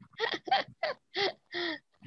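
Laughter heard over a video call: about five short, breathy laughs in a row, each falling in pitch.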